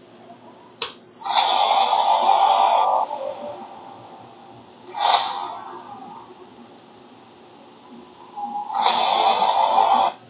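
Sci-fi intro sound effects: a short sharp hit, then a loud noisy whoosh lasting about a second and a half, another brief hit in the middle, and a second long whoosh near the end, over a faint low hum.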